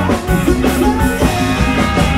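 Live band playing up-tempo Thai ramwong dance music: electric guitar, bass guitar and drum kit, with a steady drum beat.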